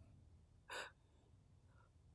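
A single short, sharp intake of breath by a young woman, a gasp, about three-quarters of a second in, in otherwise near silence.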